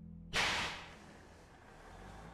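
A sudden sharp swish or crack about a third of a second in, fading over about half a second into steady room hiss as the low music drops away.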